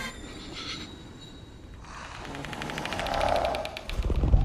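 Film-trailer sound design. A low, quiet rumble is joined about halfway through by a fast, even metallic rattling tick that builds in level toward the end.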